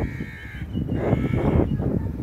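A crow calling twice, two drawn-out caws about a second apart, over a low steady rumble.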